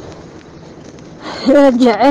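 A woman speaking loudly into a handheld microphone, starting about a second and a half in. Before that there is only low outdoor background noise.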